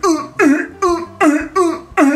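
A voice crying out in short, repeated cries, about two a second, each one falling in pitch.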